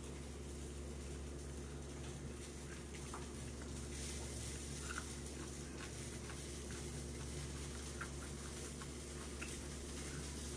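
A person chewing fried smelts: faint, scattered small clicks and mouth smacks over a steady low room hum.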